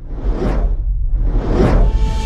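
Two whoosh sound effects from a logo animation, each swelling and fading, over a deep rumble; steady music tones come in near the end.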